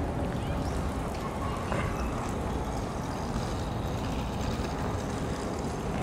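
Steady outdoor background noise: a low rumble with no distinct events.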